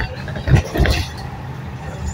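Steady low road and engine rumble of a moving vehicle, heard from inside it while driving on a highway, with two short louder sounds about half a second and just under a second in.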